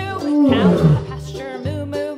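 A lion roar sound effect, falling in pitch, over upbeat children's background music with a steady beat.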